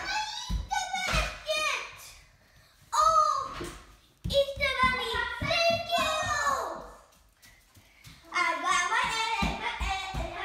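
A young child's high voice calling out in several bursts, with no clear words.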